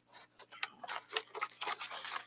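Irregular light clicks and taps, about a dozen in two seconds, from small nativity figurines and their box being handled and sorted through.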